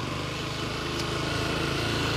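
Motorcycle engine running steadily under load as the bike climbs a steep street, the sound growing slightly louder.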